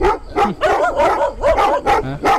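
A dog barking repeatedly in quick succession, about four barks a second.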